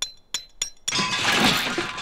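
Cartoon metal clatter from inside a shaking doghouse: about four sharp, ringing clinks in quick succession, then a loud clattering crash of loose metal parts that lasts about a second and fades, as a screw and a spring are knocked loose.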